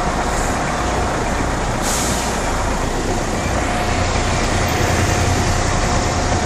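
Engines idling in stationary city traffic, with a steady low drone and a short hiss of air about two seconds in, typical of a bus's air brakes.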